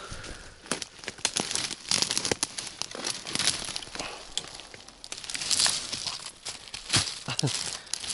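Dry twigs and dead leaf litter rustling and crackling, with many sharp snaps and clicks of thin dead branches, as they are pushed aside by hand.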